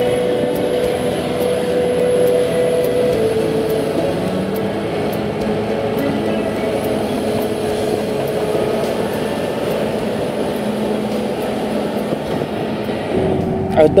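Caterpillar D6R crawler bulldozer working in sand: its diesel engine runs steadily under the noise of the moving machine, with faint regular ticks.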